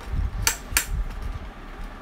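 Plastic game box being handled: two sharp plastic clicks about half a second apart, over low bumps and rubbing as the box is moved close to the microphone.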